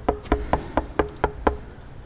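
Knuckles rapping on a solid apartment front door: a quick run of about seven knocks, some four a second, each with a short ringing note from the door. The knocking stops about one and a half seconds in.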